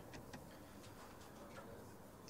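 Near-silent room tone with a few faint, scattered clicks.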